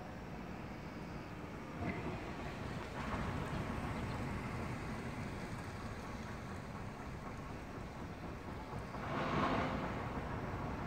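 Steady outdoor background rumble with no distinct events. It swells louder for about a second, roughly nine seconds in, and then eases back.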